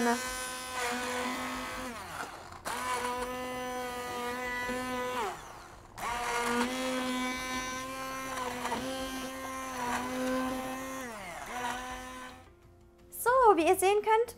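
Hand-held electric immersion (stick) blender puréeing a pot of cooked beetroot soup. Its motor runs in three bursts with a steady whine; the whine dips in pitch as the motor is let off, about two seconds in and near the middle, and winds down to a stop shortly before the end.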